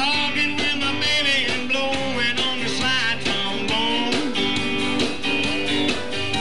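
A live blues band playing an instrumental break: a lead part bends and slides notes over a steady rhythm section of bass, keys and drums.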